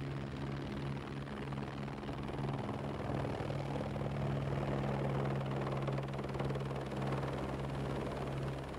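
Helicopter in flight heard from inside its cabin: a steady drone of engine and rotors, a low hum under a rushing noise, growing a little louder about three seconds in.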